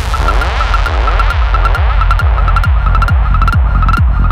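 Progressive psytrance track: a steady four-on-the-floor kick drum, a little over two beats a second, over a rolling bass line. A held high synth note plays on top, with sweeping synth glides that rise and fall in pitch, and the treble filtered down.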